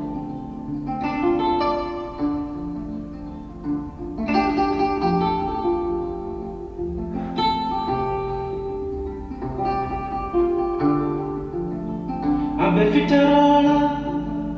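A Spanish-language song: a singer over acoustic guitar, with long held notes and a moving bass line.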